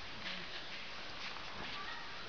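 Faint, irregular soft thuds and shuffles of two fighters clinching: bare feet moving on the ring canvas and bodies pressing against each other, over a steady low background noise.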